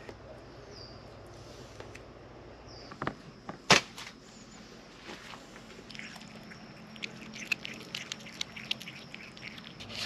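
A cat chewing on a filleted fish carcass, a run of small crunching clicks over the last few seconds. Before that, a couple of short bird chirps, and a single sharp knock a little before the middle.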